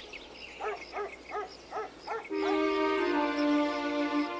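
A cartoon animal voice gives five short calls, each rising and falling in pitch, about a third of a second apart. Just past halfway, soft music with long held notes comes in and becomes the louder sound.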